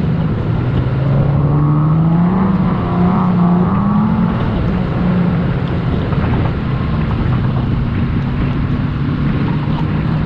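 4x4 engine pulling steadily over sand, its pitch rising about two seconds in and then settling, over a constant rush of wind noise on the microphone.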